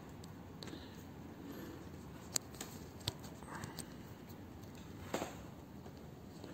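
A few faint, sharp clicks and small knocks of handling over a quiet background, the strongest near the end, as the microphone's 3.5 mm plug is being connected to a phone.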